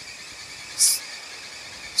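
Pulp-cleaning machinery of a recycled-paper mill running with a steady drone, cut by one short, loud hiss about a second in.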